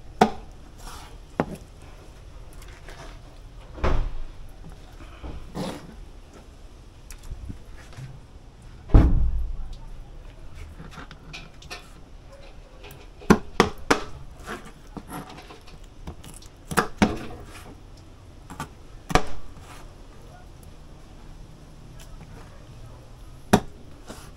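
A kitchen knife chopping raw chicken backs into bite-size pieces on a plastic cutting board: irregular knocks of the blade on the board, with the heaviest thump about nine seconds in and a quick run of cuts a few seconds later.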